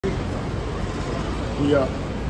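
Steady city street noise with a low traffic hum; a man says "yeah" near the end.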